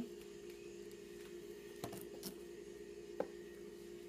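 Quiet room tone with a steady low hum. Three faint clicks come about two seconds in, the last and loudest a little after three seconds.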